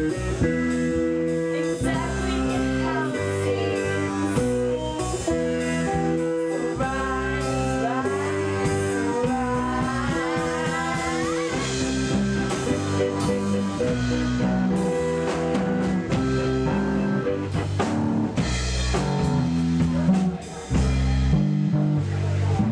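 Live band music in a blues-rock style: guitar and drums with singing, notes sliding in pitch partway through.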